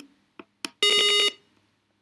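A simulated piezo buzzer in Tinkercad Circuits, sounded through the computer, plays one steady electronic beep lasting about half a second as a piano key button is pressed on the simulated Arduino. A couple of faint clicks come just before it.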